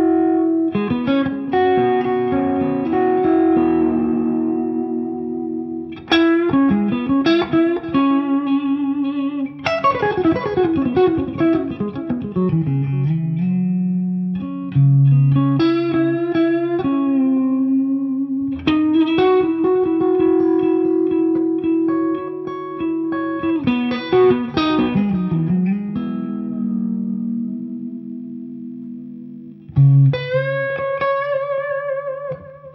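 Fender Custom Shop 70th Anniversary 1954 NOS Stratocaster played through an amplifier, mostly clean with a touch of drive. The playing mixes strummed chords and single-note lines, with held notes shaken with vibrato and several bends sliding in pitch.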